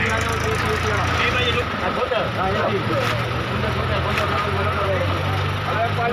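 A crowd of men talking and calling over the steady low hum of an idling engine, most likely a truck's.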